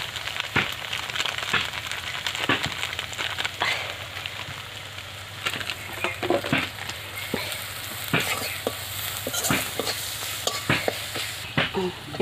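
Onions and spices sizzling in oil in an iron kadai, with a metal spatula scraping and knocking against the pan at irregular intervals as they are stirred.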